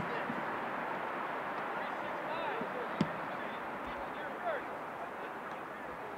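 Chatter of players' voices across an outdoor football field, with one sharp thump of a football being kicked about three seconds in.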